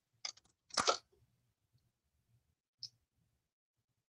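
Brief handling sounds of paper being laid and pressed down on a cutting mat: a couple of small clicks, then a short rustle just under a second in, and one faint click near the three-second mark.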